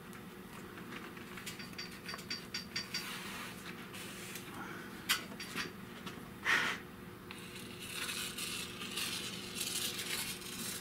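Vinyl upholstery being cut and worked onto a metal glovebox panel: scattered light clicks and scrapes, two sharper knocks about five and six and a half seconds in, then a rubbing hiss near the end, over a low steady hum.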